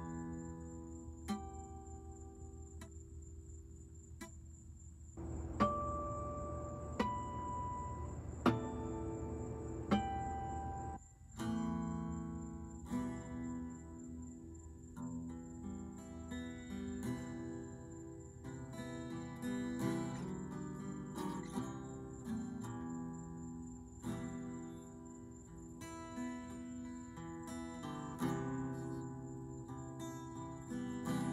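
Acoustic guitar played solo, without singing: strummed chords, a few single ringing notes picked out between about five and eleven seconds in, then steady strumming again.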